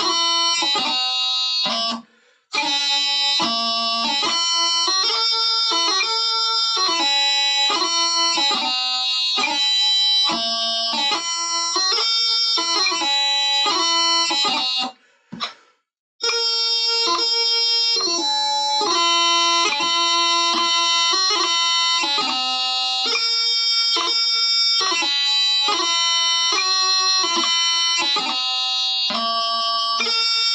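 Bagpipe chanter playing a strathspey melody alone, without drones. The tune breaks off twice, briefly about two seconds in and again for about a second near the middle.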